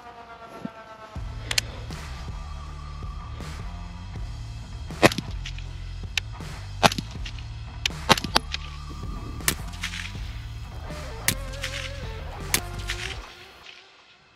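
Suppressed 11.5-inch short-barrelled rifle with a Gemtech HALO suppressor firing about eight single shots at irregular intervals, each a short sharp crack. Background music plays under the shots and fades out near the end.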